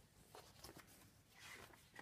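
Near silence, with faint paper rustling and a few light taps as a picture book's page is handled and turned.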